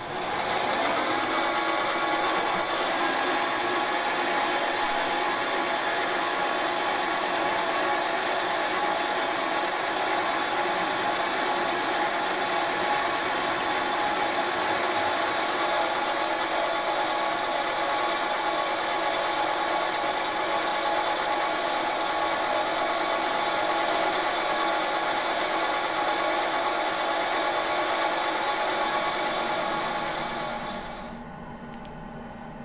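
Small metal lathe running, its turning tool taking a steady cut along an aluminium piston blank to bring its outside diameter down to size. The motor and spindle whine and the cutting noise hold at an even level throughout.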